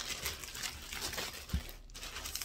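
Thin clear plastic bag crinkling as it is handled and cut open with scissors, with one brief low thump about three-quarters of the way through.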